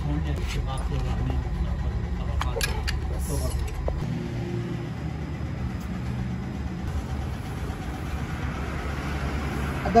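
Light metallic clicks and taps of a hand tool working on a steel hydraulic bottle jack in the first few seconds. Under them runs a steady low mechanical hum, with the background noise changing about four seconds in.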